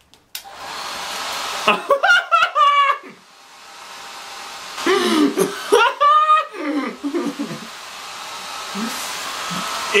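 Hair dryer switching on just after the start and blowing through the hose into a fabric bonnet attachment, a steady rushing hiss that dips about three seconds in and then slowly grows louder. A man laughs over it twice.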